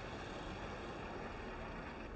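Low, steady outdoor background noise: a low rumble and hiss with no distinct events.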